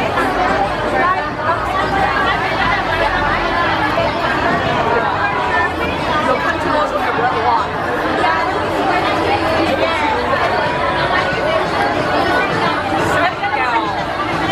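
Several people talking at once close by, overlapping voices of a crowd chatting.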